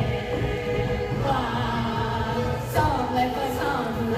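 Chorus of young singers in chef costumes holding long notes that slide between pitches, over musical accompaniment.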